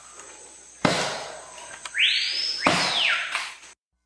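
One sharp axe blow into a tree trunk about a second in, ringing off. Near the end comes a whoosh that rises and then falls in pitch.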